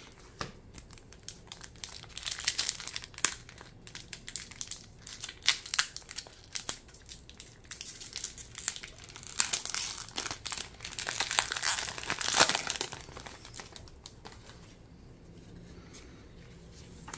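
Foil booster-pack wrapper crinkling and crackling as it is handled and torn open, a run of sharp crackles that grows densest and loudest around eleven to thirteen seconds in, then dies down near the end.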